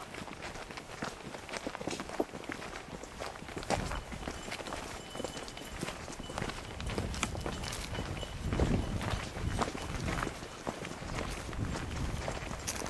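Footsteps of people walking over dry forest ground and grass, an irregular run of crunching steps.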